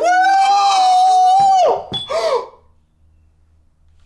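A person screaming: one long high scream held for nearly two seconds, then a short wavering cry about two seconds in, after which only a faint low hum is left.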